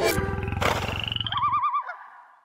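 Animalist network logo sting: a low, pulsing, growl-like animal sound, joined about a second in by a warbling high call. Both stop shortly before the end.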